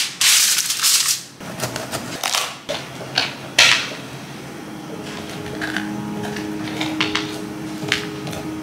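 Aluminium foil crinkling loudly as it is pressed and smoothed onto a baking sheet, with a few shorter crinkles up to about three and a half seconds in. Soft background music with held notes comes in about five seconds in.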